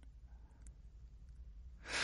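A quiet pause in spoken narration, holding only a faint low hum, with the narrator drawing a breath near the end before speaking again.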